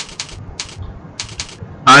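Computer keyboard keys tapped about eight times in quick little groups, sharp dry clicks; a man's voice starts right at the end.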